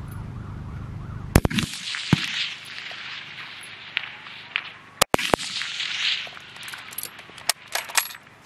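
Loud 7.62×51mm rifle shots on a fullbore range, one about a second and a half in and a heavier one about five seconds in, each trailing off in an echo. Near the end come sharp metallic clicks as the K98k Mauser bolt is worked to reload.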